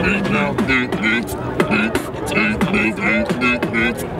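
Human beatbox: a steady, quick beat of mouth-made kick and snare clicks with a short hummed low tone between the hits.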